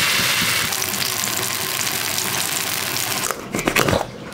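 Batter sizzling on a hot griddle as it is poured: a loud, steady hiss. Near the end the hiss gives way to a quick run of sharp clicks.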